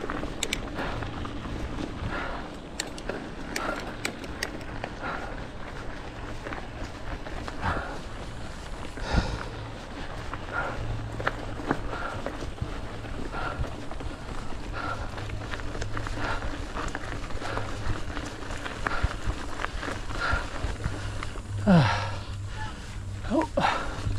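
Norco Sight A1 full-suspension mountain bike pedalled along a flat, dusty dirt trail: steady tyre noise on dirt with small clicks and rattles from the bike, and the rider breathing hard. About two seconds before the end a brief sound slides down in pitch.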